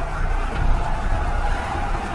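Dramatic film soundtrack: a sustained droning note held over a dense, steady low rumble.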